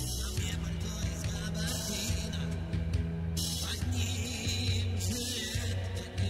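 A Soviet pop-rock band playing live, in a passage without singing: a sustained bass line under a steady beat, with bright high-frequency washes coming and going.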